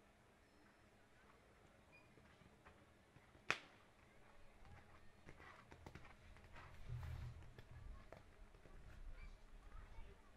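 Faint hoofbeats of a horse cantering on a sand show-jumping arena, dull thuds that grow louder in the second half. There is a single sharp click about three and a half seconds in.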